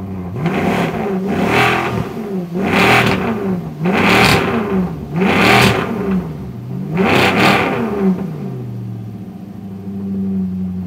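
Maserati sports car engine revved five times, each rev rising sharply in pitch and falling back to idle, about a second and a half apart.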